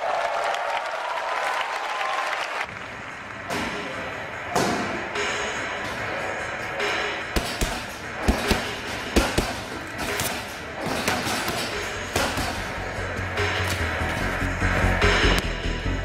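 Music with a steady bed, overlaid with sharp thuds of boxing gloves striking pads that come often and irregularly from about halfway in.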